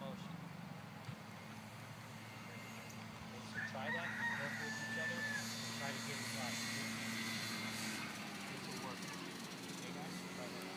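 A rooster crows once, starting about three and a half seconds in and ending in a long held note, over a steady low hum.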